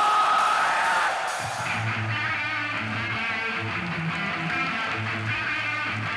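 Live heavy metal played loud on electric guitars: a held, ringing note fades out, then a new chugging electric guitar riff with bass starts about a second and a half in.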